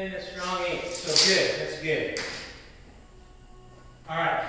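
A man's voice for about the first two seconds, with no clear words and a sing-song quality, then quiet shop room tone for the rest.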